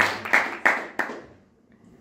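A few scattered hand claps from the audience in the first second, dying away into near quiet.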